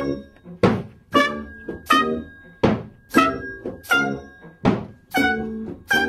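A small acoustic band playing a passage of short, separate chords, about ten in six seconds, each struck sharply and dying away before the next, with plucked strings among the instruments. A faint high note is held behind the chords.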